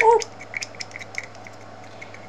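A paper towel rustling and scraping in a series of quick, light scratchy clicks as leftover UV resin is wiped out, following a woman's short 'whoo'.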